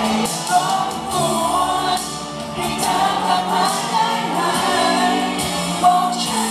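Live pop song: a male vocalist singing into a handheld microphone over accompanying music, the voice held on long, wavering notes.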